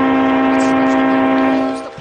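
Winnipeg Jets goal horn, a manufacturer's audio sample, sounding one long steady blast that stops shortly before the end.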